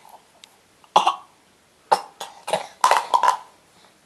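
A baby makes a string of short cough-like sounds: one about a second in, then a quick run of them between two and three and a half seconds.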